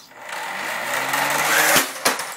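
A 15 lb combat robot's electric motor whirring up and growing steadily louder, followed by a sharp impact near the end.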